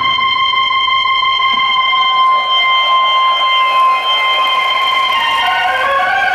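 Electric organ holding one high, steady note for about five seconds, then moving on to other notes near the end.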